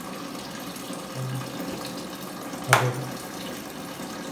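Tap water running steadily into a small portable washing machine as it fills. One sharp click comes nearly three seconds in.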